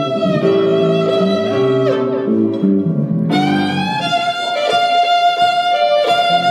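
Violin playing long sustained notes, sliding up into a new held note about three seconds in, over a keyboard accompaniment of changing chords.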